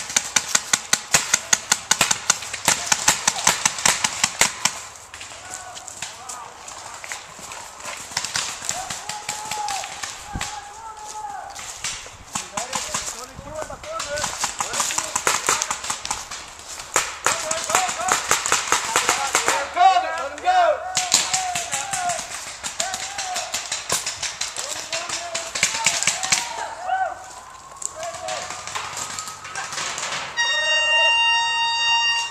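Paintball markers firing in rapid strings of sharp pops, a dense run for the first four seconds or so, then more bursts through the rest, with players shouting in the distance between them.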